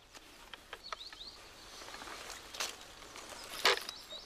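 Quiet woodland ambience with a few faint bird chirps about a second in, and a handful of soft clicks and knocks as the chainsaw is handled for refuelling, the clearest near the end.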